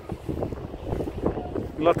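Wind buffeting the microphone: an uneven, gusty low rumble. A voice starts near the end.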